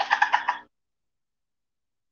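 A woman laughing: one short burst of about six quick pulses lasting under a second.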